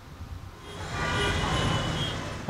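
Busy city street traffic noise fading in about half a second in, a steady din of engines with faint horns.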